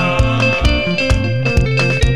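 Instrumental passage of a Kenyan band song: electric guitar lines over a bass guitar and a steady drum beat, with no singing.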